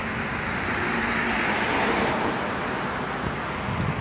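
Street traffic: a steady rush of road noise that swells and fades over a couple of seconds, as a car passes.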